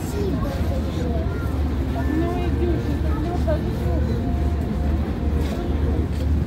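Background chatter of several people's voices, none close or clear, over a steady low rumble.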